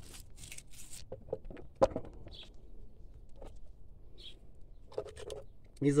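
A hand breaking young green shoots off an old grapevine trunk: scattered rustles and a sharp snap about two seconds in.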